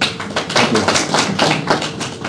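A small group applauding: a dense, irregular patter of hand claps that starts at once and thins toward the end.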